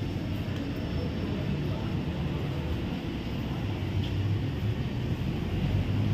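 A steady low rumbling noise with no distinct events, strongest in the bass, swelling slightly toward the end.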